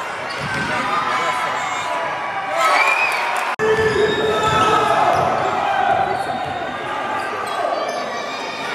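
Basketball dribbled on a hardwood gym floor under players' and bench voices and calls. A louder shout rises about three seconds in, and the sound drops out for an instant just after it.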